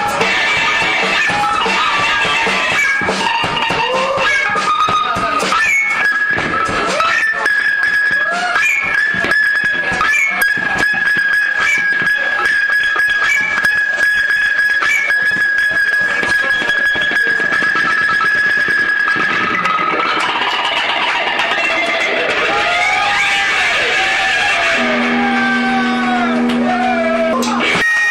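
Loud live rock from an electric guitar and drum kit, noisy and dense, with one high note held for a long stretch in the middle. Near the end a low steady drone comes in.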